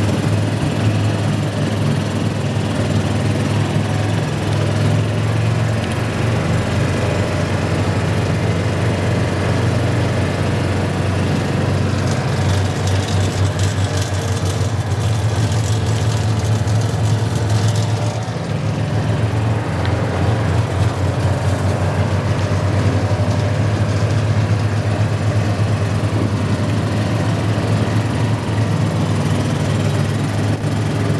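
Utility vehicle's engine running steadily as it drives along a dirt ranch trail, with a hissing noise added for several seconds in the middle.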